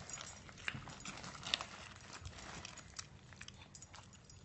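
A cocker spaniel eating a carrot on a hard floor: faint, scattered crunches and clicks.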